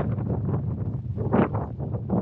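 Wind buffeting the camera microphone: a steady, ragged low rumble with a louder burst about one and a half seconds in.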